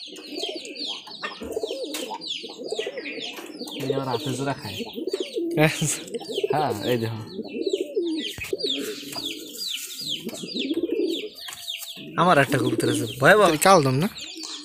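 Domestic pigeons cooing continuously, a low rolling chorus, with many quick high chirps throughout and a louder stretch near the end.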